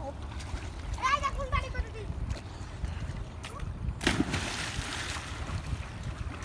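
Children swimming in a river: a high-pitched child's shout about a second in, then a loud splash of water about four seconds in, over a steady low rumble.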